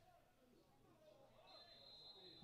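Near silence with faint distant voices, then, about one and a half seconds in, a referee's whistle starts a steady high blast, calling a foul.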